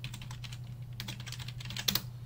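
Typing on a computer keyboard: quick runs of key clicks, with a couple of louder keystrokes near the end.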